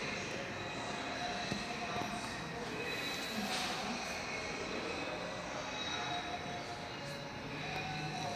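Steady indoor background noise with a few thin, high steady tones running through it and no distinct events.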